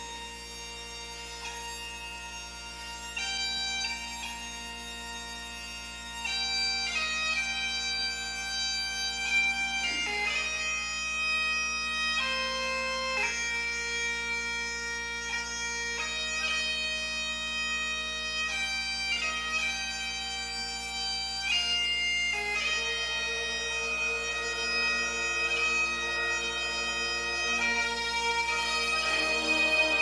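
Bagpipe music: a melody played over steady drones, growing louder about six seconds in.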